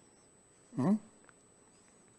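A short 'mm-hmm' from a person about a second in, otherwise near silence between sentences of speech.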